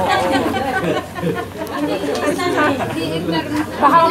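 Crowd chatter: many people talking over one another at close range, with no single voice clear.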